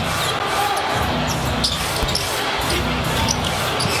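A basketball being dribbled and bounced on a hardwood court during live play, over steady background arena crowd noise.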